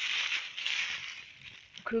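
Dry leaves and bean stems rustling as they are pushed aside close to the microphone, loudest in the first second and then fading away.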